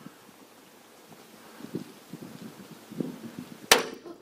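Faint rustling and small knocks of gear as soldiers move through a building. Near the end comes a single sharp crack of a sniper's rifle shot, which strikes a Marine's Kevlar helmet in the head.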